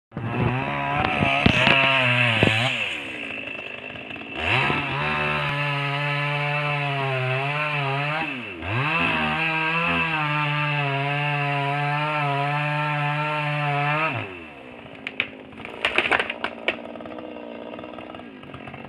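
Two-stroke chainsaw running at high revs and cutting wood, its pitch wavering under load. Its pitch drops and it revs back up about three seconds in and again about eight and a half seconds in. After about fourteen seconds it falls much quieter, and several sharp cracks follow.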